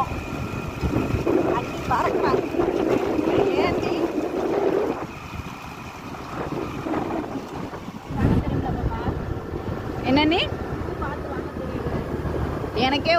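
Wind buffeting the microphone on a moving motor scooter, with the scooter's engine running underneath. A sudden stronger gust comes about eight seconds in.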